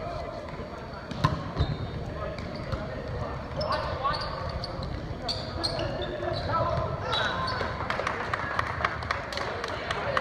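Volleyball rally in a gym: the ball is hit in a series of sharp, scattered slaps, with players and spectators shouting and chattering.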